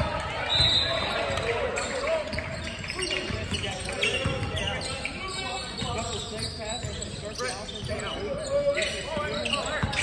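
Basketball game in a large gym: a ball bouncing on the hardwood floor and sneakers squeaking, under a steady mix of players' and spectators' voices.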